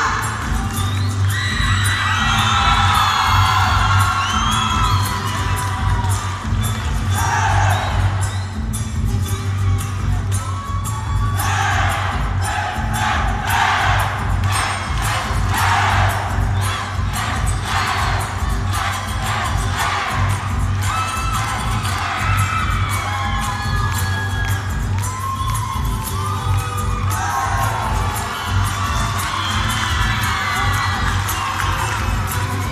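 A crowd of students shouting and cheering over loud music with a steady beat, the cheering swelling for a few seconds around the middle.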